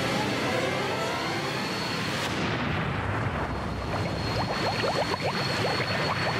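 Sci-fi regeneration energy sound effect: a loud, continuous rushing roar whose hiss thins about two seconds in, leaving a thin high whine, with rapid crackling in the last couple of seconds.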